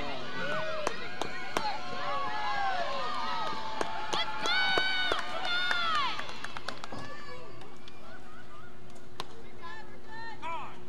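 Several voices of softball players and spectators shouting and cheering in short overlapping calls as a run scores, with scattered sharp claps or knocks; the shouting dies down about six seconds in, leaving a steady faint hum.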